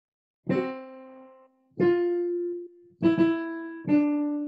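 Digital piano playing a short, slow four-note motive, each note struck and left to fade. It leaps up after the first note, then steps down.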